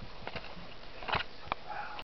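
Ferret kits moving about in and around a cardboard box: a few short scratches and knocks, the loudest just over a second in.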